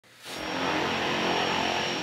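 Floatplane's propeller engine running steadily as it moves across the water, fading in during the first half second, with a thin high whine above the engine noise.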